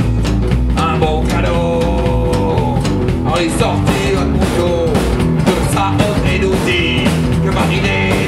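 Rockabilly band playing live: electric guitar on a lead line with sliding, bending notes over upright double bass and drum kit.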